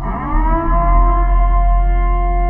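Logo intro sting: a sustained electronic chord of steady held tones over a strong deep bass drone. The pitches bend and settle in the first half second as it swells in.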